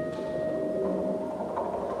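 Solo clarinet: a held note fades down to a soft, quiet tone that dies away near the end, with a few faint, short pitched taps.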